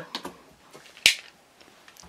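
Faint handling noise with one sharp click about a second in, from a rotary cutter and acrylic ruler being handled on a cutting mat.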